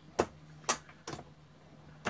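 Three short, sharp clicks about half a second apart as hands take hold of an auto-indexing turret reloading press, over a faint steady low hum.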